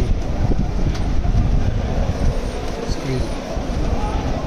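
Automatic document feeder of a Kyocera TASKalfa copier running, pulling sheets through one after another, about one page a second, as it scans originals.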